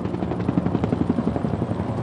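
Helicopter in flight, its rotor blades beating in a rapid, even pulse.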